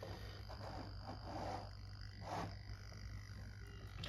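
Small servos of a solar tracker's pan-tilt mount making a few short, faint buzzes as the tracker is switched on and starts adjusting, the loudest a little past halfway, over a low steady hum.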